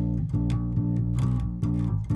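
Guitar picking out a riff as a run of single notes, changing every fraction of a second, worked out by ear in A.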